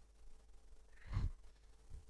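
A man's single short exhale, a sigh, close on a headset microphone about a second in, with a fainter low puff of breath near the end.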